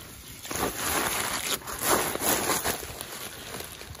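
Handling noise from a woven plastic sack and a mesh fish-trap net: irregular rustling and scraping, several short strokes, as the catch is put into the sack.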